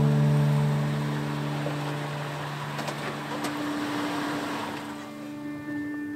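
An SUV's engine running and its tyres rolling on pavement as it pulls in and slows, the noise fading away over about five seconds.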